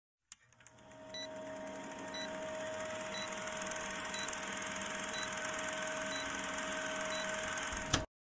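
Old-film countdown sound effect: a film projector's steady whir and rapid clatter with a constant hum tone, and a short high beep about once a second. It fades in over the first couple of seconds and cuts off abruptly at the end.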